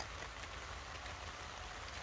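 Steady rain falling, an even, faint hiss with a low rumble underneath.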